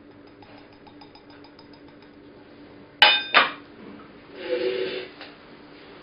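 Stainless steel lab sieve parts being handled: faint light taps, then two sharp, ringing metal clinks about three seconds in, and a short metal-on-metal scrape a little over a second later.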